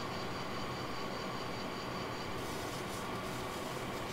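Quiet, steady hum and hiss of a fiber laser marking machine standing by with its red aiming light on, with a faint high whine that stops about halfway through.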